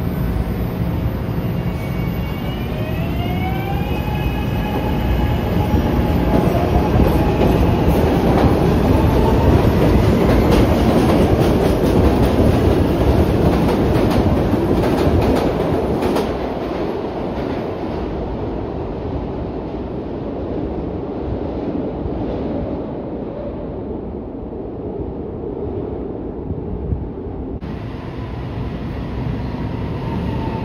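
A Market-Frankford Line subway train pulling away from the platform. Its motors give a whine that climbs in pitch over the first few seconds as it accelerates. Then comes a loud rumble of wheels on rail with clacking over the rail joints, strongest about ten seconds in, before it fades as the train goes down the tunnel.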